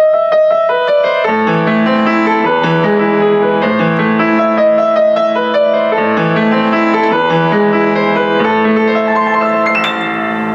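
A Steinmayer upright acoustic piano being played: a melody in the right hand with a low bass part joining about a second in, with a slightly bright tone. It ends with a quick run up the keyboard.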